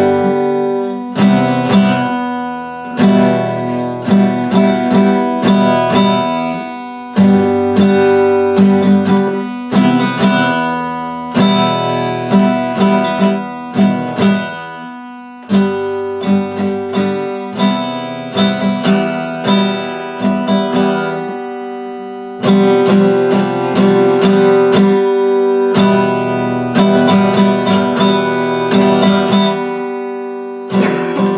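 Solo Epiphone steel-string acoustic guitar played unaccompanied, chords picked and strummed in a repeating pattern, each stroke ringing out before the next. The chords are let ring a little longer a few times before the pattern starts again.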